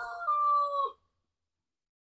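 Bresse rooster crowing: the held end of one long crow, steady in pitch, dipping slightly and cutting off about a second in, followed by silence.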